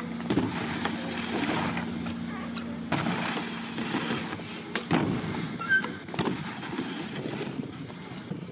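BMX bike riding a quarter-pipe ramp: tyres rolling across the ramp with a low hum, and several sharp knocks as the wheels hit the ramp, the first about three seconds in and more around five to six seconds.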